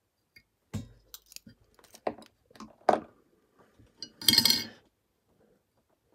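Small metal clinks and clicks of fly-tying tools being handled at the vise: a few scattered sharp ticks, then a brief louder rattle a little past four seconds in.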